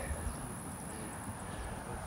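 Quiet outdoor ambience with a faint, steady low rumble.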